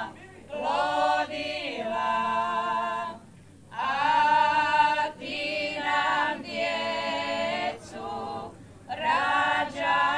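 A women's folk singing group singing a traditional Slavonian song a cappella, several voices together in long phrases with short breaks for breath between them.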